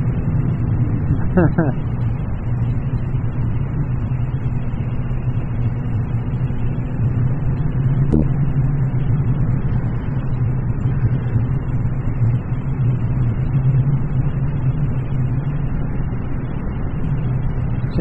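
A 1982 Yamaha XJ1100 Maxim's inline-four engine running steadily at cruising speed, heard from the rider's helmet camera with a rush of wind noise over it. A short laugh comes just after the start, and a single sharp tick about eight seconds in.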